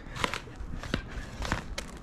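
A gift package being handled: a cardboard box slid out of a fabric pouch, making a few sharp rustles and clicks.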